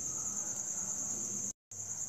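A steady, high-pitched background whine over faint low noise, broken by a brief cut to silence about one and a half seconds in.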